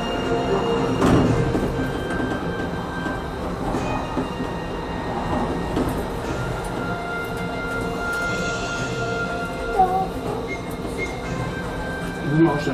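An amusement-park monorail train running along its elevated track, heard from on board: a steady, even rolling noise from the wheels and drive.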